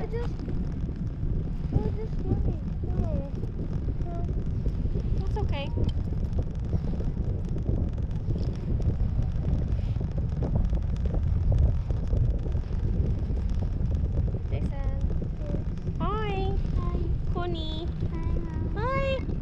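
Steady wind buffeting the camera microphone during a parasail flight, a continuous low rumble. Faint voices come through now and then, most of them near the end.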